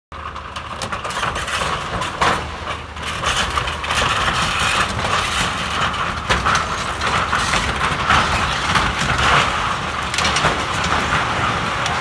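Excavator engine running under load as its bucket tears down an old building, with repeated sharp cracks and crashes of breaking structure and falling debris over the steady engine rumble.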